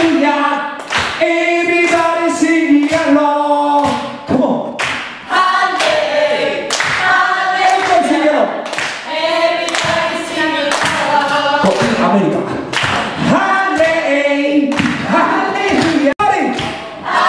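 Several voices singing together, with hand claps.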